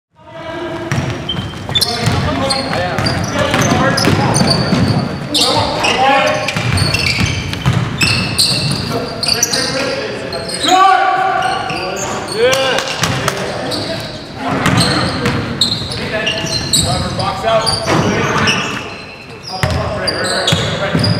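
Basketball game in a gym: the ball dribbling on the hardwood floor and players' voices, echoing in the large hall. The sound fades in at the very start.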